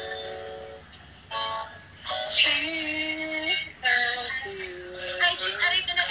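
A voice singing long held notes, some sliding in pitch, over music, with a brief chord at the start.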